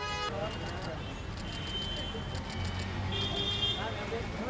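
Busy city street: a steady traffic rumble with voices, and a few short, steady high-pitched tones sounding over it.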